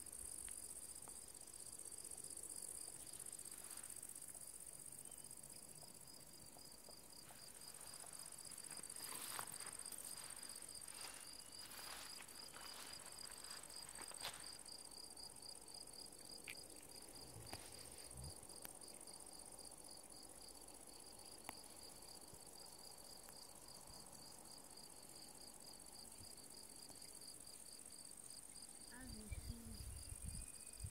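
Faint chorus of meadow insects stridulating: an even, rapidly repeating chirp over a higher steady hiss, with a few clicks and a low thump near the end.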